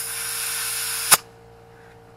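Compressed air hissing steadily from an air-hose chuck into a new tubeless trailer tire, whose bead gap is sealed by a bicycle inner tube. A little past a second in, a sharp pop as the bead snaps onto the rim, and the hiss stops.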